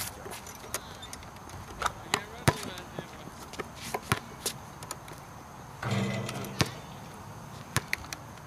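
Basketball bouncing on a hard outdoor court: a handful of irregularly spaced sharp thuds, the loudest about two and a half seconds in. A short voice sound comes just before six seconds.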